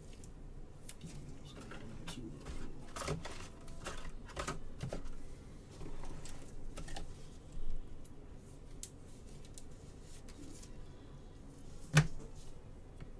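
Trading cards and clear plastic card holders being handled with gloved hands on a table: scattered light clicks, taps and rustles, with one louder knock a little past halfway.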